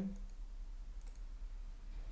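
Faint computer mouse clicks, one near the start and another about a second in, over a steady low electrical hum from the recording.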